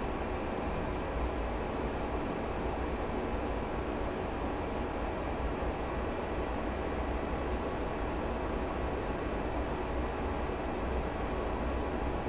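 Steady background rumble and hiss that holds level throughout, with no distinct knocks, clicks or tones.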